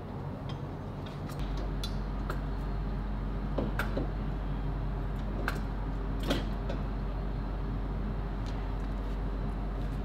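Scattered sharp metal clinks and knocks as a turbocharger is handled and worked onto the exhaust manifold studs, over a steady low hum. The studs are not lining up, so the turbo won't seat.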